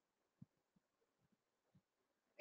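Near silence with a series of very faint, short low thumps about every third of a second: a man swallowing gulps of water from a glass.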